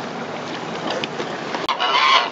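Steady wind-and-boat noise on the open water, cut off abruptly near the end by loud honking calls from domestic geese.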